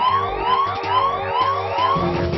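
Synthesized cartoon-machine sound effect: a siren-like rising swoop repeating about three times a second over a pulsing electronic beat.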